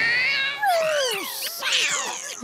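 High, squeaky cartoon bird chatter from a crowd of Woodstock birds, many calls at once gliding up and down in pitch, with one longer call sliding down about half a second in.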